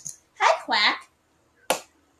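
Two short vocal sounds, then a single sharp click near the end.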